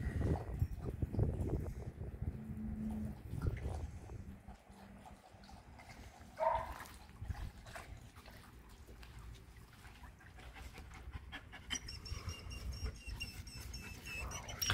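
Wolfdogs panting and moving about close to the phone, loudest in the first few seconds and then fainter.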